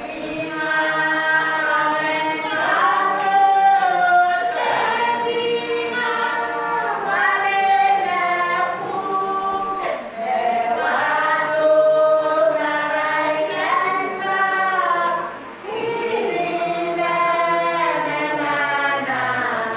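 Church congregation singing a hymn together, many voices holding long notes in slow phrases.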